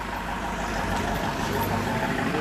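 A motor vehicle's engine running steadily, a continuous low rumble with hiss.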